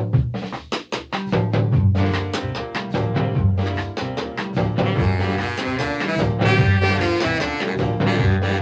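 Instrumental break in a rhythm-and-blues band recording, with no singing: a quick run of sharp drum hits in the first second, then the full band playing on over a steady bass line, with brighter instruments filling in about five seconds in.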